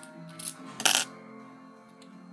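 A sharp metallic clink about a second in, with a smaller click before it: lock-picking tools knocking against a padlock. Faint background music underneath.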